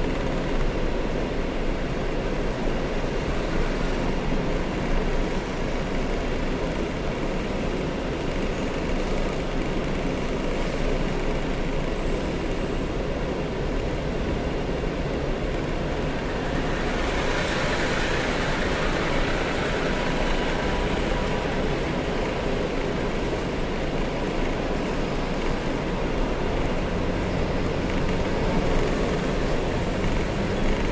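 Steady road and traffic noise from a car moving slowly in city traffic, heard from inside the car, with a brief rise in hiss a little past halfway.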